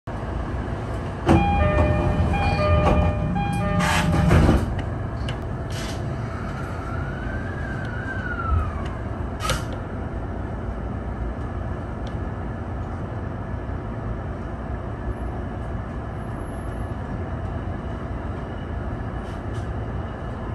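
Steady running noise of a JR E231-1000 series electric commuter train, heard from the cab as its wheels roll over long welded rail that has recently been reground, which makes the rail sound ring out. In the first few seconds a louder burst of several steady tones sounds over it, and a rising-then-falling whine comes a few seconds later.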